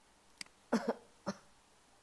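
A person coughs twice in quick succession, the first cough louder, just after a single sharp mouse click.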